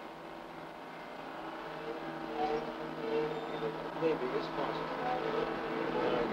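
A steady engine hum that slowly grows louder, with faint, muffled voices over it.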